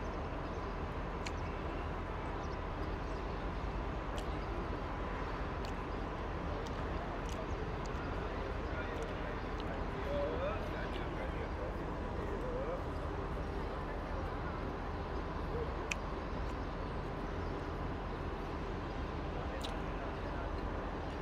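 Steady outdoor background hum and noise with faint distant chatter, broken by a few light clicks.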